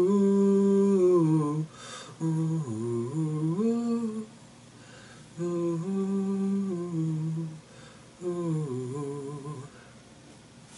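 A man humming a wordless melody a cappella, in four phrases with short pauses between them. The pitch slides down at the end of each phrase.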